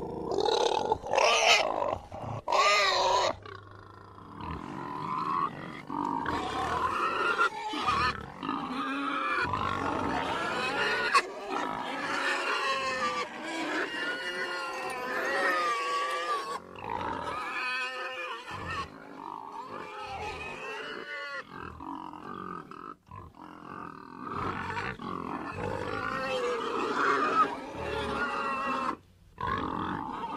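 Domestic pigs grunting and squealing almost without a break, with the loudest, highest squeals in the first three seconds.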